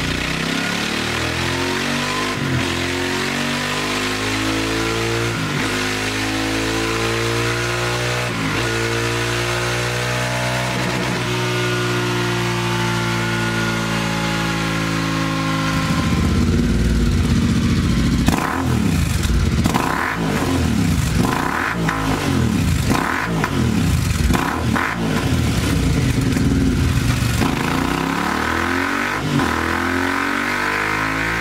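Royal Enfield Continental GT 650's 648 cc parallel twin running on a dynamometer through its stock exhaust, the engine note rising and falling in long sweeps. About halfway through, the same bike is heard on a Scorpion twin slip-on exhaust with dB-killer baffles: louder, revved in about ten quick blips, then settling near the end.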